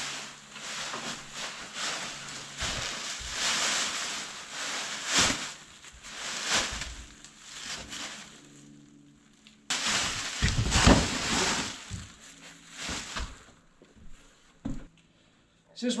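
Rustling and crinkling of a large black plastic bag being handled, with items shifted about and a few knocks. The loudest part is a cluster of heavy thumps about ten to eleven seconds in.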